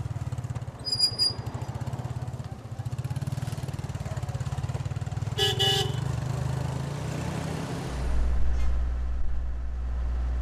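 Small motorcycle engine running with a fast, even pulse as it carries riders away, with a horn toot about halfway through. Near the end the sound cuts to a steadier, deeper engine drone, a generator.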